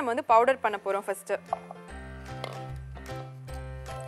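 A woman speaking for about a second and a half, then background music with held notes over a bass line.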